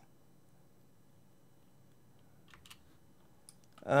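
Near silence with a few faint clicks at a computer, a short cluster about two and a half seconds in and one more near the end.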